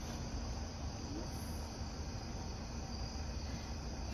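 Crickets chirping steadily in the night, a continuous high trill, over a faint low rumble.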